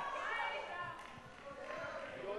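Indistinct voices calling out in a large, echoing hall, fainter than the emcee's amplified speech just before.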